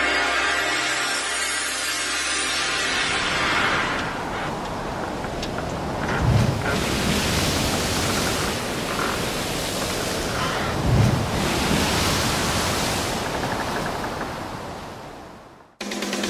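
Steady rushing sea-water noise, with two low surges about six and eleven seconds in, fading away just before the end. The opening seconds still carry the last of a musical intro tone.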